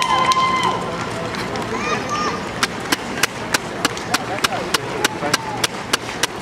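Roadside marathon spectators: a voice calling out in a long held cheer at first, then steady rhythmic hand-clapping, about three claps a second, over the general crowd noise.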